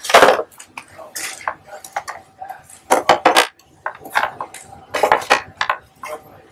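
Hard masonite printing plates clacking and knocking against one another as they are shuffled through in a stack: a run of irregular clacks, the loudest right at the start.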